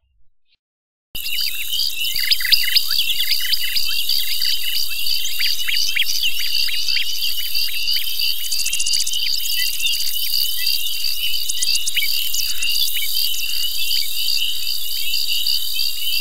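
Dense chorus of chirping insects, starting suddenly about a second in, with many short chirps over a steady high trill.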